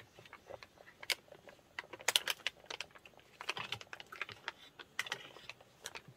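Faint, irregular small clicks and crinkles of a clear plastic bag being handled by hand.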